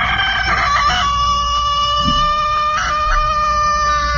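A rooster crowing: one long, drawn-out crow that steps down slightly in pitch about a second in, then holds steady until near the end.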